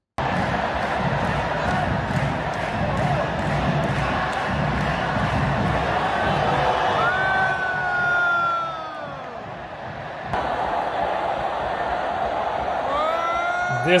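Large football stadium crowd chanting and cheering, with a faint rhythmic beat about twice a second through the first half. The crowd sound changes abruptly about ten seconds in.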